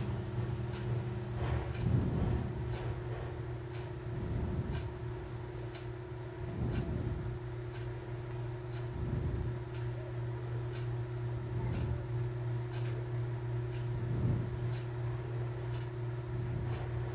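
Stretchy nylon spandex fabric being folded and smoothed by hand: soft rustles every couple of seconds over a steady low hum, with a faint tick about once a second.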